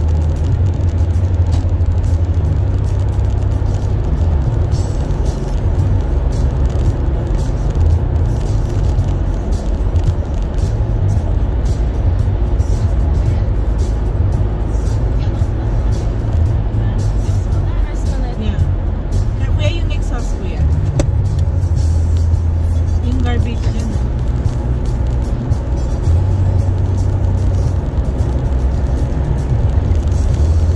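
Car cabin road noise while driving on a highway: a steady low rumble from the tyres and engine, with music playing along with it.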